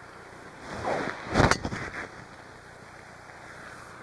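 Golf driver swung at full speed: a swish of the club through the air, then a sharp crack as the clubhead strikes the golf ball about a second and a half in.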